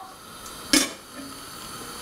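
A stainless steel pot lid set down on a pot, making a single sharp clink about three-quarters of a second in, over a steady hiss.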